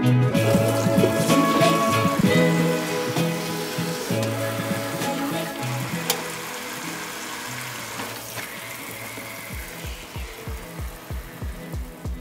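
Kitchen faucet sprayer running water into a stainless steel sink, heard under background music. The water hiss fades in the second half, and a low, regular beat comes into the music near the end.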